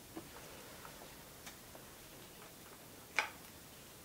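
Scattered light clicks and taps from a hand working oil pastel on paper over a drawing board, irregularly spaced, with one sharper click a little after three seconds in, over faint room hiss.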